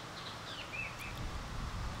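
Quiet outdoor ambience: a few faint bird chirps in the first second, with a low rumble building underneath from about a second in.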